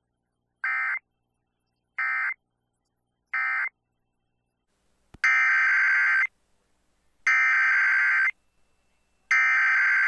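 Emergency Alert System digital data bursts: three short end-of-message bursts a little over a second apart, then a click and three louder one-second header bursts about a second apart, which begin the next station's weekly alert test.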